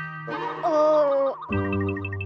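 Cartoon music and sound effects: a wavering tone that slowly falls, then, after a short break about three-quarters of the way in, a steady low chord with light tinkling notes over it.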